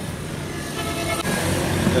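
An engine running steadily, a low even rumble.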